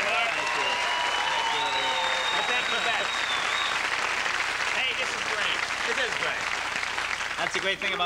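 Studio audience applauding and cheering, with scattered voices calling out over it.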